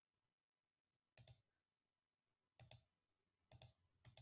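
Three faint computer mouse clicks, each a quick pair of sharp clicks, about a second apart, as dropdown menu options are selected.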